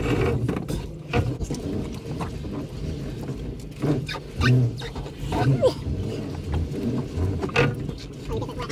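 Crab pot being hauled aboard a small boat and its rope pulled in by hand: irregular knocks and scrapes of the pot and line against the hull, over a steady low hum from the boat's outboard motor.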